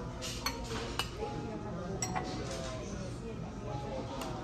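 Metal spoon clinking and scraping against a ceramic bowl as food is scooped, with a few sharp clinks with brief ringing about half a second, one second and two seconds in. A murmur of background voices runs underneath.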